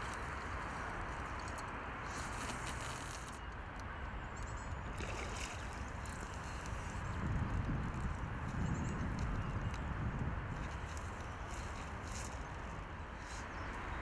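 Steady outdoor riverbank noise of wind and water, with a low rumble swelling from about seven to ten seconds in.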